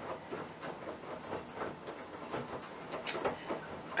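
Faint, irregular small clicks and taps of light handling, with one sharper click about three seconds in.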